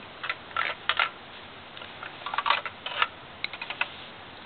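Plastic Lego pieces and small items clicking and clattering as they are handled, in irregular short clicks with a busier patch of clatter past the middle.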